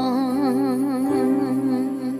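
A song: a singer holds one long note with a steady vibrato over a soft instrumental backing, the drawn-out end of a sung line.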